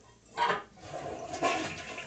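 Toilet flushing: a sudden rush of water about half a second in, then water running steadily with a faint tone in it.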